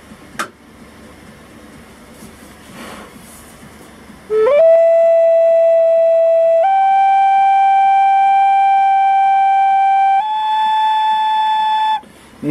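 Native American flute played as a tuning check: three long, steady notes held one after another, each a step higher than the last. The top two are the G and A just tuned, with the A now a little sharp. A short click comes about half a second in, before the playing starts.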